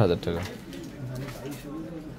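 A man's voice finishing a word, followed by faint, low murmuring voices in the background.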